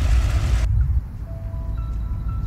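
A low outdoor rumble cuts off abruptly under a second in. Then slow background music of single long held notes begins.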